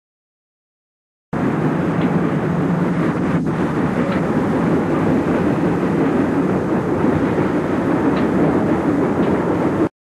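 Steady rumble and rattle of a moving train, heard from on board, on an old film soundtrack. It starts abruptly about a second in and cuts off just before the end.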